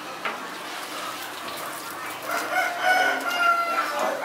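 A rooster crowing once, a single long held call starting about halfway through, over the running noise of a rotary chicken plucker drum.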